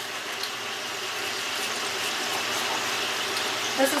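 Steaks frying in a hot pan: a steady sizzle that grows slightly louder.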